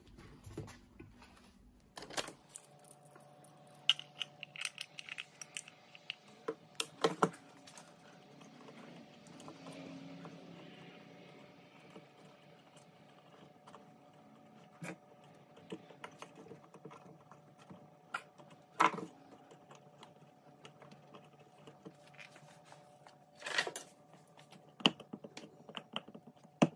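Irregular small clicks and knocks of a lawnmower recoil starter's plastic pulley and housing being handled while the pull cord is threaded through, with a few louder knocks, over a faint steady hum that sets in about two seconds in.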